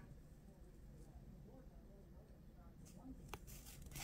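Near silence: faint room tone, with a couple of faint ticks near the end as the trading cards are handled.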